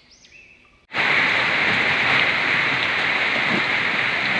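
Typhoon downpour: heavy rain falling as a steady, loud hiss that starts suddenly about a second in.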